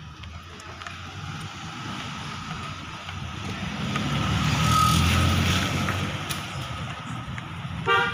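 A motor vehicle passing close by: its low engine rumble swells to a peak about five seconds in and then fades, and a short horn toot sounds at the very end.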